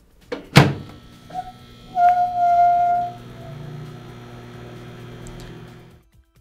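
Microwave oven door shut with a thunk about half a second in, then a steady tone for about a second, and the oven running with a steady low hum from about three seconds in, heating a bowl of water.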